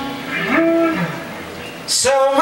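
Live band's held chord dying away, then a low moaning vocal note that swoops up and falls back, followed by a brief lull in the playing.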